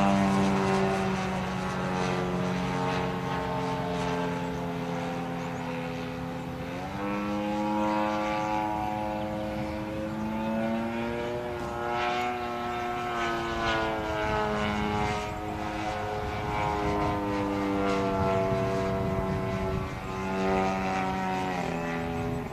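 Single-cylinder two-stroke RCGF 55cc gas engine and propeller of a giant-scale RC aerobatic plane in flight. The note rises and falls with throttle changes and the plane's passes, with a sharp climb in pitch about seven seconds in and a drop near the end.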